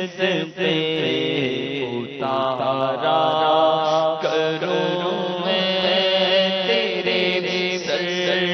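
A solo male voice singing an Urdu naat (devotional poem) in long, wavering, gliding notes, over a steady held tone underneath.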